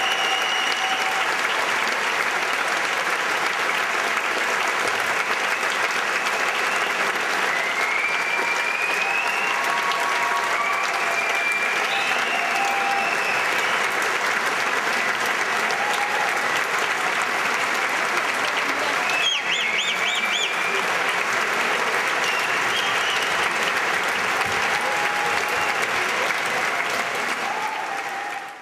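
Large audience applauding steadily, with a few high shouts and whistles standing out above the clapping now and then.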